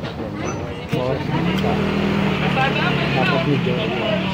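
A motor vehicle engine running steadily, starting about a second in just after a sharp knock, under people talking.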